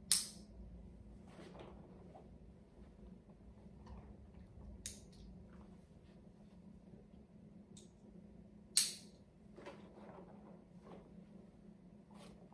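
Brief sharp crinkling rustles from a treat pouch being handled, two louder ones about nine seconds apart with softer clicks between, over a faint steady hum.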